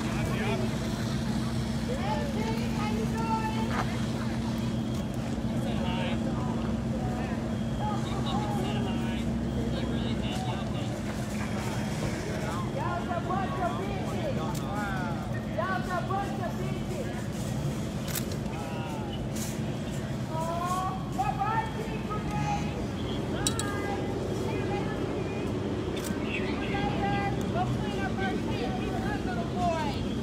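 Steady low hum of an idling vehicle engine, under scattered voices and calls from a crowd in the street.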